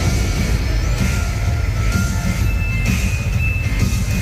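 Loud show soundtrack music from a sound system, with a heavy, rumbling bass end. A held high tone comes in a little past halfway.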